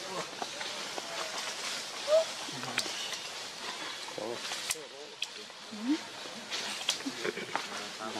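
Scattered, low human voices with short murmured utterances, one a brief "ừ" a little after the middle, over steady forest background noise with a few sharp clicks.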